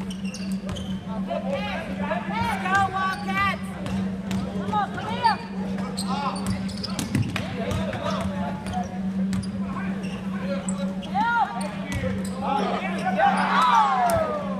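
Basketball bouncing on a hardwood gym floor during live play, with short sneaker squeaks on the court and voices calling out. A steady low hum runs underneath.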